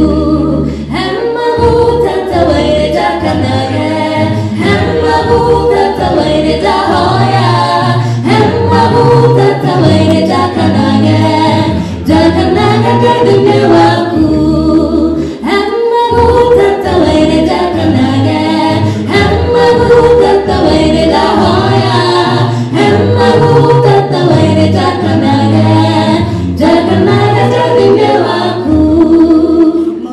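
A mixed a cappella group of male and female voices singing in harmony into microphones, unaccompanied, with a low bass line under the upper parts.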